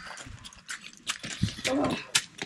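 Light knocks and clicks from a stack of plastic chairs being carried, with a child's voice near the end.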